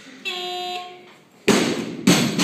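Loaded barbell with rubber bumper plates dropped from overhead onto the lifting platform, landing with a loud crash about one and a half seconds in. Before it, a brief steady tone is held for about three quarters of a second.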